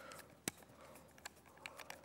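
A few faint clicks and taps from a screwdriver and the plastic chamber block being handled on a linear air pump, the sharpest click about half a second in.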